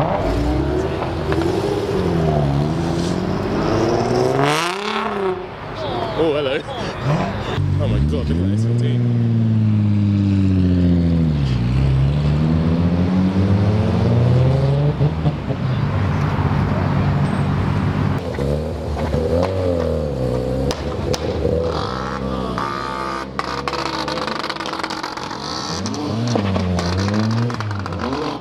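Performance car engines revving as cars drive off one after another, the exhaust note rising and falling in pitch several times, with the longest rise and fall in the middle.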